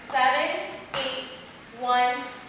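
Speech only: a woman's voice calling out short single words at an even pace, roughly one a second.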